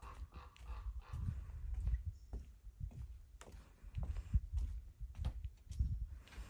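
Footsteps on a wooden deck: a series of dull, uneven thuds with a few sharp clicks in between.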